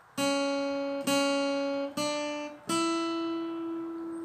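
Acoustic guitar playing four single picked notes on the second string, frets 2, 2, 3 and 5: two equal notes, then a step up and a higher note that is left ringing. It is a slow, rising intro melody played one note at a time.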